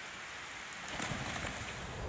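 Steady rain falling on a swimming pool and its wet paved deck, an even hiss of drops.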